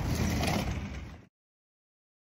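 Steady outdoor background noise with a low hum, fading out over about a second, then dead silence.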